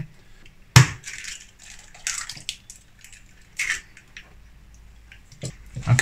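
Eggs tipped from a small drinking glass into a glass measuring jug of tangerine liquid. A sharp clink of glass on glass comes about a second in, then a few soft splashes and sloshing sounds.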